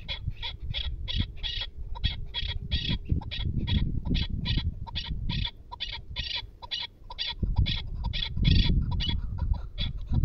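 Chukar partridge calling in a long run of short repeated notes, about three a second, over a low rumble.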